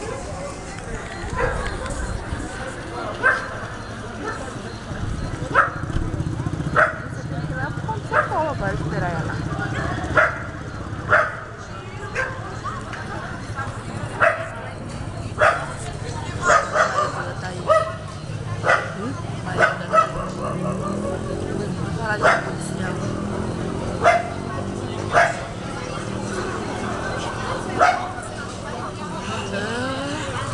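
A dog barking again and again in short, sharp barks at irregular gaps of about a second, over the murmur of crowd chatter.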